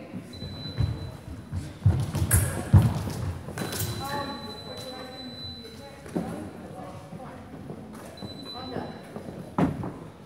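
Men's sabre exchange: fencers' feet thudding on the piste as they advance and lunge, a few sharp clicks of blade contact, then a raised voice.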